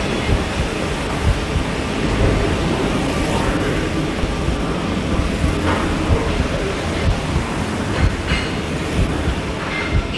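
A rail vehicle running on its track: a steady, loud rumble with rail clatter.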